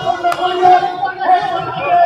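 Voices of a crowd of marchers, with held, pitched voices over general chatter, and one sharp click near the start.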